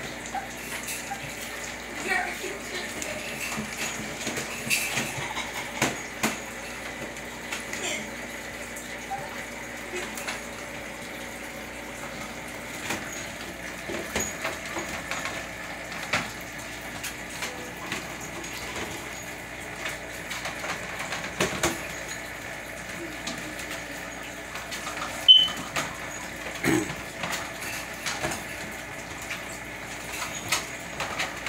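Scattered light clinks and knocks from dogs moving about in wire crates, over a steady room hum, with one sharp click near the end.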